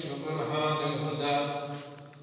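A man's voice chanting an Islamic devotional recitation into a handheld microphone, holding long melodic notes that trail off near the end.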